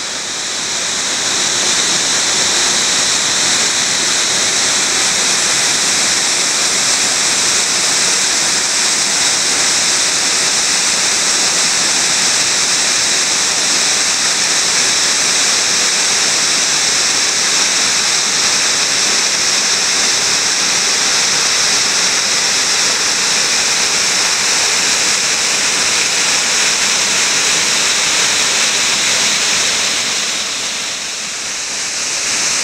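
A 45-foot waterfall pouring steadily over a rock ledge: a loud, even rush of falling water.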